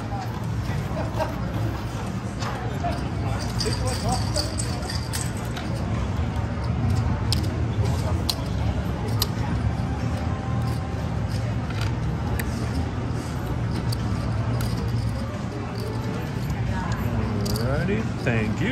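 Busy casino background: a steady hum of indistinct voices and machine noise with faint music under it. Scattered sharp clicks of clay casino chips are set down and stacked on the felt as a payout is placed.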